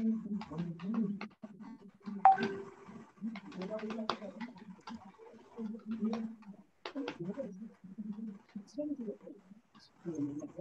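Faint, indistinct voices coming over a video call, too unclear to make out words, with a few small clicks.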